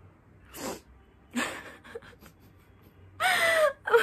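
A woman's two sharp, breathy gasps, then a drawn-out wail falling in pitch near the end: she is breaking down crying.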